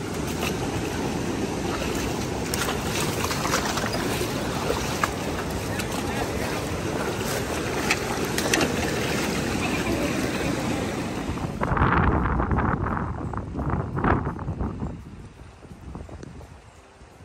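Steady rush of river rapids with wind on the microphone, with short splashes near the middle as a salmon thrashes in a dip net. About twelve seconds in, the rush drops away and a few loud, uneven bursts follow.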